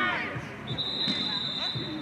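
Referee's whistle: one long, steady, high blast beginning under a second in, stopping play with a player down on the pitch. Players' shouts come just before it, with a short knock partway through.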